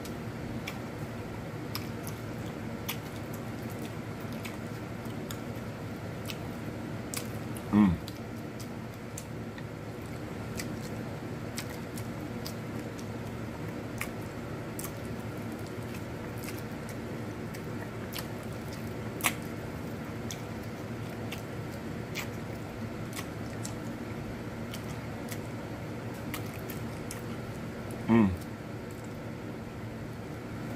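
A person eating sauce-glazed chicken wings by hand: scattered small wet mouth clicks and smacks of biting and chewing over a steady background hum. There is one short voiced sound about eight seconds in and a sharp click a little past the middle.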